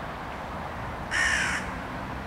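A single bird call, about half a second long, just past the middle, heard over a steady low background noise.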